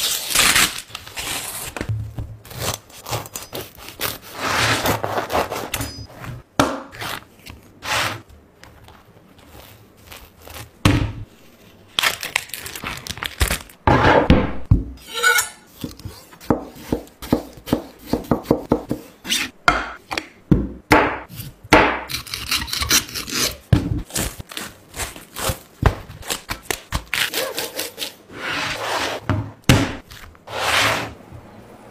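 Close-up food-preparation sounds: a large knife sawing through a crusty loaf in its paper bakery bag, paper rustling, then a knife slicing a tomato and tapping on a cutting board in many short, sharp knocks.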